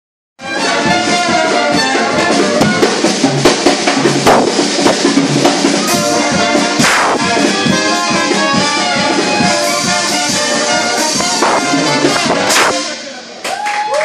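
Small live jazz band with trombone, trumpet and tuba playing a brass-led tune. The music stops about a second before the end.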